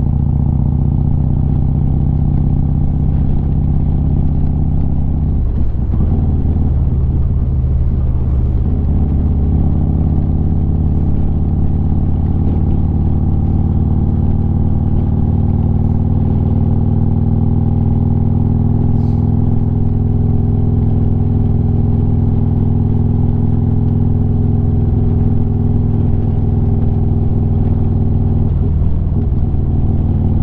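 Harley-Davidson Street Glide's V-twin running steadily at highway cruising speed, heard from the rider's seat. The engine note shifts briefly about six seconds in, then settles back to a steady drone.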